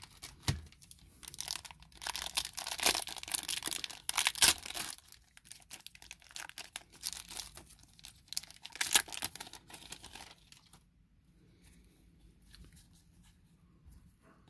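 A Magic: The Gathering booster pack's foil wrapper being crinkled and torn open by hand, in repeated rustling bursts over roughly the first ten seconds, then only faint handling.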